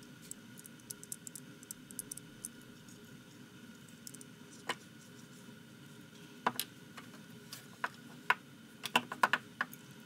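Small metal parts of a Wards Master No. 5 jack plane's frog clicking under the fingers as the cutter nut is threaded on and tightened with the blade adjustment lever seated in its slot. Scattered light clicks, with a few sharper ones in the second half.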